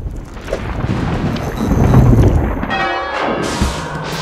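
A low rumble of thunder swells to its loudest about two seconds in. A church bell rings out about three seconds in.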